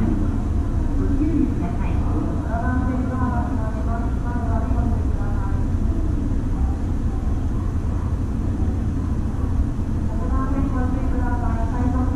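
Steady low hum inside a stopped E257-series train car, with a voice over a public-address system at about two to five seconds in and again near the end.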